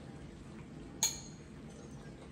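A metal fork clinks once against a small ceramic bowl about a second in, over quiet room tone.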